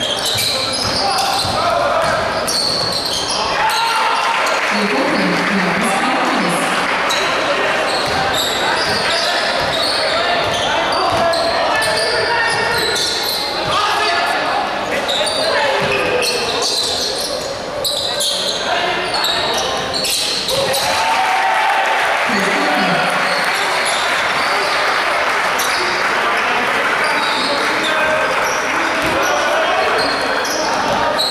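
Indoor basketball game sound: a basketball bouncing on the court amid a steady crowd of voices, echoing in a large hall.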